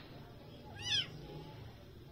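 Calico kitten giving one short, high-pitched mew that rises and falls in pitch, about a second in.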